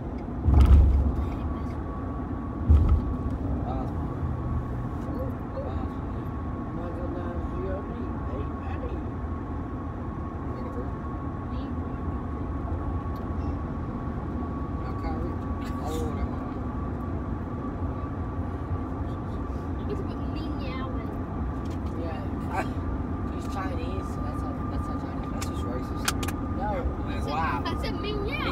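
A steady low rumble with a faint steady whine and muffled voices. Two heavy thumps come within the first three seconds.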